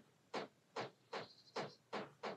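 Faint, short scratching strokes of a brush pen tip over painted, textured watercolour paper, about two or three strokes a second.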